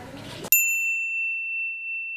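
Faint room noise, then about half a second in a single bright bell-like ding that rings on one steady high tone for about two seconds. All other sound cuts out completely while it rings: a ding sound effect added in editing.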